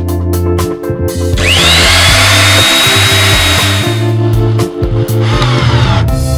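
Power drill-driver sound effect driving screws: a whine that rises and then holds for about three seconds, then a second, shorter run near the end. Background music with a bass line plays throughout.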